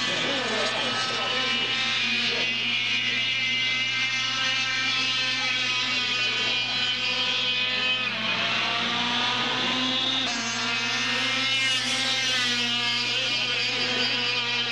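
Air-cooled two-stroke kart engines running at high revs, their pitch rising as the karts accelerate, once about eight seconds in and again about eleven seconds in, over a steady low hum.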